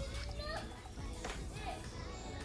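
Small children's voices: short high calls and chatter as they play, over quiet background music.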